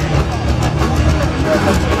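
A metal band playing live through a PA, heard from the crowd. Distorted guitars, bass and drums merge into a dense, steady wall of sound, with voices over it.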